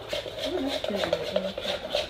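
A metal spoon stirring thick, coloured school-glue slime base in a plastic mixing bowl, with a tap against the bowl at the start and soft scraping after.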